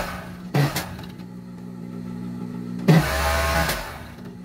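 Industrial overlock (serger) machine, its motor humming steadily. There is a brief run of stitching about half a second in, and a louder run of about a second roughly three seconds in as fabric is fed through.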